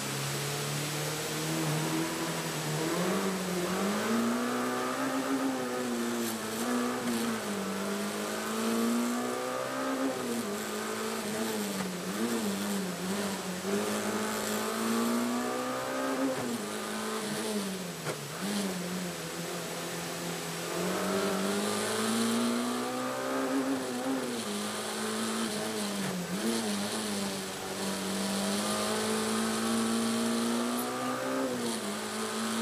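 Peugeot 106 rally car's four-cylinder engine heard from inside the cabin. It runs steadily for the first second or two, then revs hard and pulls through repeated gear changes, its pitch climbing and dropping every few seconds as the car drives the special stage.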